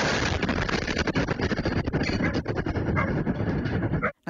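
Blast wave from a cruise-missile explosion picked up by a home security camera's microphone. It starts suddenly and goes on for about four seconds of dense, loud rumbling noise full of rattling and clatter as windows and doors are battered.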